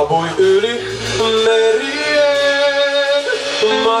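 Live band music: a male singer holds a long sung note over strummed acoustic guitar, a second guitar and drums.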